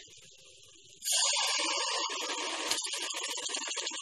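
Ground onion-tomato paste landing in hot melted butter and spices in a pan, sizzling loudly from about a second in.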